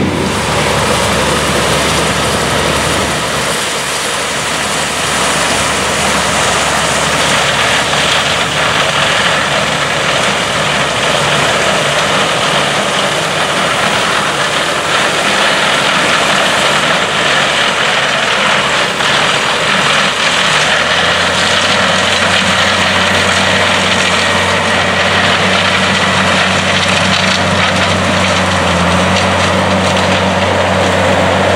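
Claas Lexion 750 combine running in the field, harvesting and unloading corn on the go: a loud, steady mix of diesel engine and threshing machinery. About 21 seconds in, a low, steady tractor engine hum comes to the fore, from the White 2-155 Field Boss tractor pulling the grain wagon nearby.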